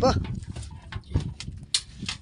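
A man's voice ends a word with a short rising call, then scattered light knocks and clicks of fish and gear being handled on the boat, with a dull thud about a second in and a sharp click near the end.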